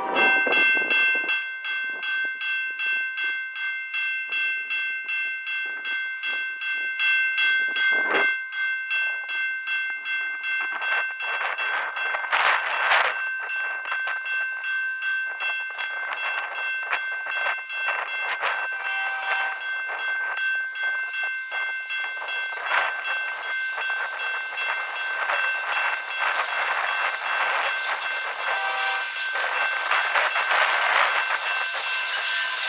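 Level-crossing warning bell ringing in a fast, even rhythm as the crossing activates. The noise of an approaching freight train grows louder under it from about ten seconds in.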